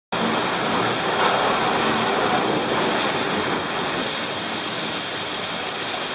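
Steady loud rush of water and wind against the hull and deck of a 60-foot IMOCA ocean-racing yacht sailing at about 20 knots through rough sea, with a faint steady high whistle above it.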